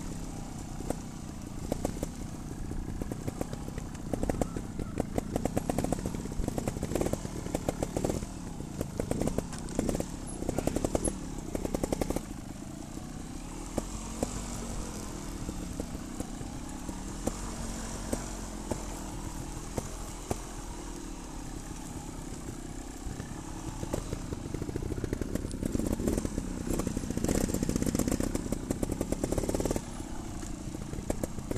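Trials motorcycle engines running at low speed on a steep downhill trail, the throttle worked in short bursts with the pitch rising and falling. The sound is steadier and a little quieter through the middle and gets louder again near the end.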